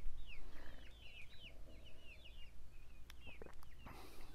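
A songbird singing: a quick run of short, downward-slurred chirps repeating throughout, with two faint clicks a little after three seconds in.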